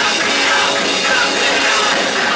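A rock band playing live and loud: electric guitar through amplifiers and a drum kit, a dense, steady wall of sound.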